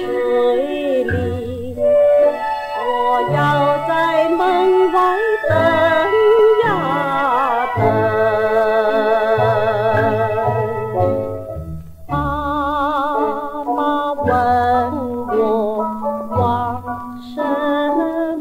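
A female singer performs a 1950s Mandarin film song over instrumental accompaniment, holding one long note with a wide vibrato about halfway through. The sound is narrow, as on an old gramophone record.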